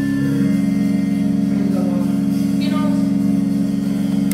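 Organ and keyboard holding long, steady low chords, with faint voices over them.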